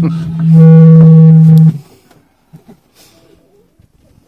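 The train's PA microphone gives out a loud, steady low drone with a buzzy edge. It starts about half a second in, holds for just over a second, then cuts off suddenly. The microphone itself is making the noise, not the speaker's voice.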